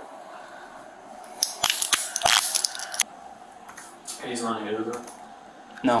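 A quick run of sharp clicks and rattles from handcuffs being handled, lasting about a second and a half, followed by a man's voice and a short "No" near the end.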